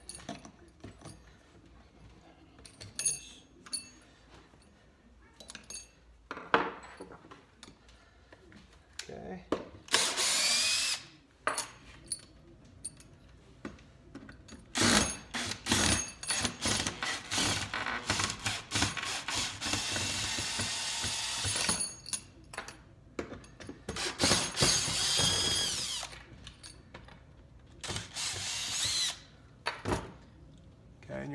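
Cordless drill-driver turning bolts on a scooter wheel hub, running in bursts. There is a short run about ten seconds in and a long stretch of several seconds mid-way. Two more runs come near the end, the whine rising in pitch as the motor speeds up, with light clinks of metal parts in between.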